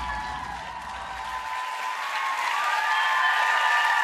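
Studio audience applauding over theme music, which holds steady tones. The music's low end cuts off about a second and a half in, and the applause grows louder after that.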